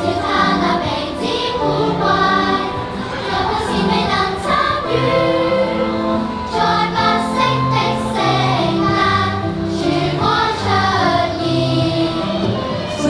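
Music with a choir singing over instrumental accompaniment.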